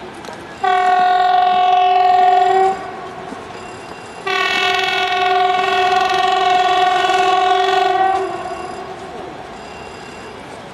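Train horn sounding two blasts at one steady pitch, a short one about a second in and a longer one of nearly four seconds from about the middle, from an approaching train warning pedestrians on the tracks.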